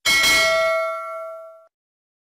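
Notification-bell sound effect: a single bright ding, struck once and ringing on several tones together, fading out after about a second and a half.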